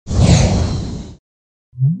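A whoosh sound effect with a deep rumble under it, lasting about a second and then cutting off. Near the end, synthesizer music begins with a rising note.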